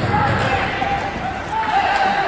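Voices calling out during an ice hockey game, over the rink's noise of skates and the knock of sticks and puck.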